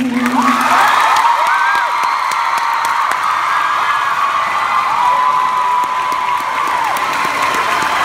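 A held musical note ends under a second in, then a crowd of young people applauds, cheers and shrieks, with many high drawn-out screams over the clapping.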